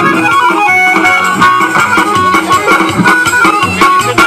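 Instrumental Russian folk tune, the backing for chastushki, played loud with a steady beat and no singing.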